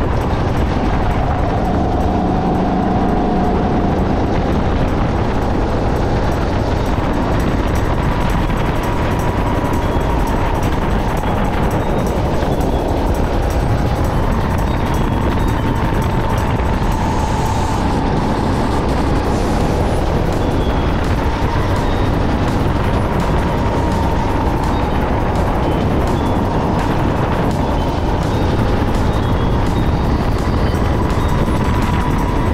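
Sodi SR5 rental go-kart engine running hard at speed, its pitch wavering slightly up and down through the corners, with wind buffeting the on-board camera.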